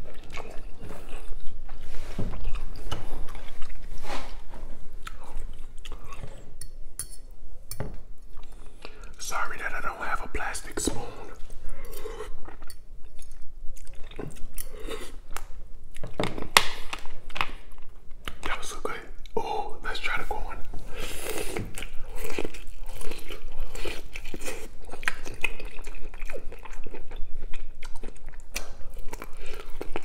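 Close-miked chewing and smacking of a person eating noodles, a dense run of short, wet mouth clicks.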